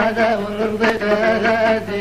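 Amazigh folk song from the Middle Atlas: a chanted vocal line over a plucked lotar, the Moroccan long-necked lute, with a sharp plucked attack at the start and another just before a second in.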